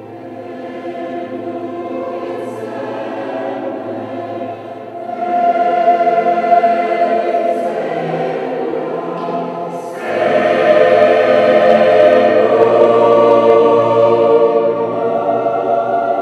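A large mixed choir of men's and women's voices singing with a string orchestra. It swells louder about five seconds in and again at ten seconds.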